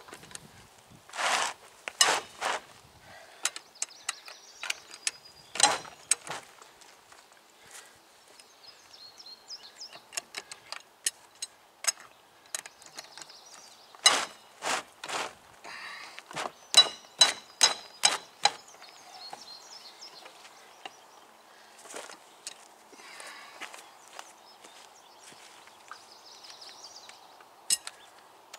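Ratchet wrench clicking on a wheel's lug nuts as they are loosened, in short runs of sharp clicks, densest in a run of about three clicks a second around the middle.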